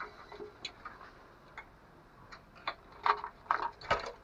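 Irregular light clicks and taps, sparse at first and bunched together in the last second or so, from a spotted dove moving about in its wire cage.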